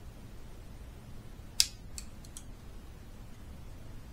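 Side cutters snipping into the old laptop charging port: one sharp snip about one and a half seconds in, followed by three lighter clicks.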